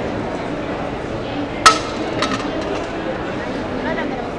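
Crowd chatter in a large hall, with one sharp clink about a second and a half in and a fainter one about half a second later.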